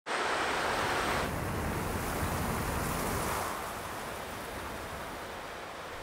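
Shallow stream running over rocks: a steady rush of water that gets somewhat quieter after about three and a half seconds.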